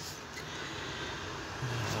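Steady background hiss with no distinct sound events, then a man's voice starting near the end.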